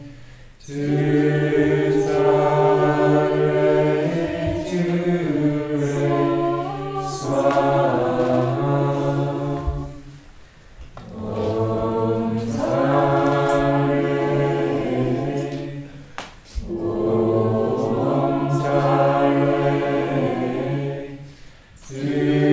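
A group of voices chanting a mantra together in unison, in long sustained phrases with brief pauses for breath between them.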